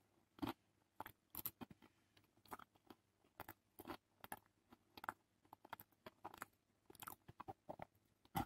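Faint chewing of a mouthful of pasta and jacket potato, with many soft scattered clicks and crunches.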